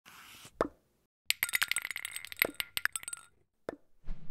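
Designed logo-intro sound effect: a short hiss and a click, then about two seconds of rapid, bright metallic clinks with ringing chime tones, and a single click near the end.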